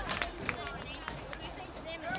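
Indistinct voices of players, coaches and onlookers on a football sideline, with a couple of brief clicks.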